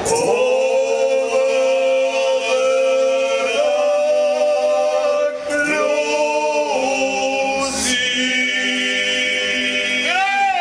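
Shanty choir singing a slow song in long held chords, the harmony shifting every second or two, with no beat.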